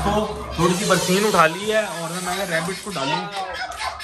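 A man talking: speech throughout, no other clear sound.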